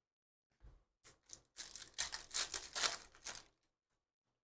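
Soft rustling and scraping of glossy chrome trading cards sliding against each other as they are flipped through by hand, with a few faint clicks first and a burst of rustling lasting about two seconds.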